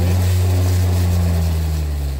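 A loud, low engine hum that swells up, holds steady and then fades away over a few seconds.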